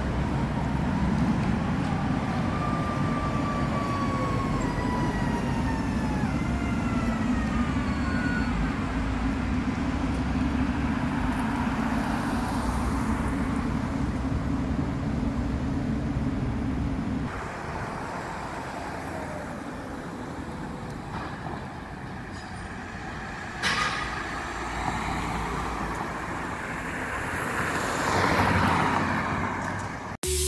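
City street traffic recorded on a phone: a steady rumble of passing vehicles, with a few high squealing tones that slide down in pitch early on. Partway through the rumble drops suddenly to a quieter street background, with a sharp noise and then a swell of passing traffic near the end.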